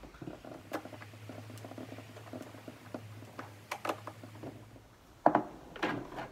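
Hand screwdriver driving screws into the plastic top plate of a kayak tackle pod: a run of light, irregular ticks and clicks, with two sharper knocks near the end.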